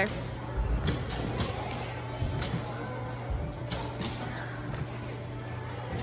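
A few short thuds of bare feet landing jumps on low training beams, over the steady hum and hubbub of a large gym.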